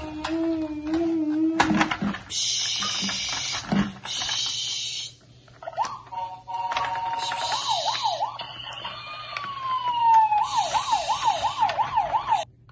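Electronic siren sound effect from a battery-powered toy fire truck: a hissing burst, then from about halfway through a siren sweeping quickly up and down, with one long falling glide in the middle, cutting off at the end. A held voice-like tone and a couple of clicks come first.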